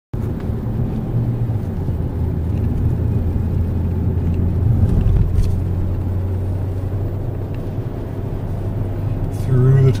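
Steady low drone of a car driving at road speed, heard from inside the cabin: engine and tyre noise with no changes in pace.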